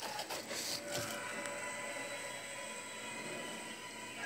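Faint clicks and rustles of a plastic scoop and powder tub being handled, mostly in the first second, over a steady faint room hum.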